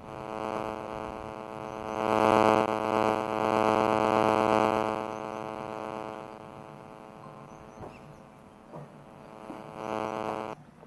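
A steady buzzing drone at an unchanging pitch, loudest a couple of seconds in and then fading somewhat.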